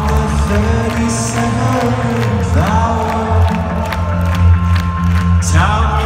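Indie rock band playing live, heard from within the audience: electric guitars, bass and drums, with sustained guitar notes and a few sliding ones. Crowd noise sits under the music.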